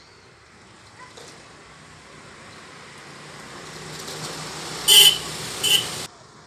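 A motor vehicle approaching, its noise growing steadily louder, then two short horn honks a little under a second apart near the end, the first the louder. The sound cuts off suddenly after the second honk.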